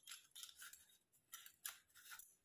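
Faint, short rustles and clicks of a set of metal bangles and their wrapping being handled, in several quick bursts.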